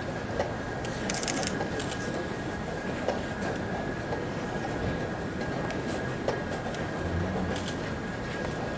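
Blitz chess hall ambience: a steady background hiss of a large playing hall with a faint constant high tone, broken by scattered sharp clicks of chess pieces being set down and chess clocks being pressed.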